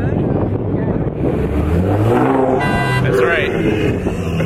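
Nissan GT-R's twin-turbo V6 revving as the car pulls away, the engine note rising and then falling over about two seconds around the middle, with a brief high-pitched tone near the end and people talking.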